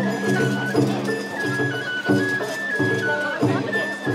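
Sawara bayashi festival music: a bamboo transverse flute (shinobue) plays a high melody in held, stepping notes over steady, rhythmic drumming.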